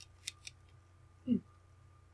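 A few light clicks of tarot cards handled on a cloth-covered table, then a short low hum from a woman's voice just over a second in.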